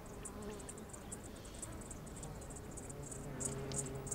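Insects chirping in a quick run of short, high-pitched pulses. A faint low buzz joins about three seconds in.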